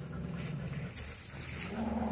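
Dogs growling low while play-fighting, a puppy mouthing an adult dog's muzzle; a short pitched sound near the end.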